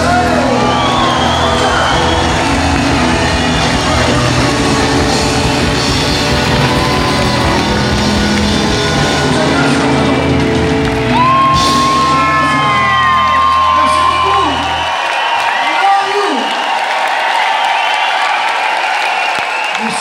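A live rumba flamenca band of amplified acoustic guitars and percussion playing loudly, the music ending about fifteen seconds in. Crowd whooping, cheering and whistling runs over the final bars and on after the music stops.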